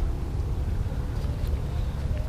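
Wind buffeting the microphone: a steady, fluttering low rumble, with no distinct sound of the cast standing out above it.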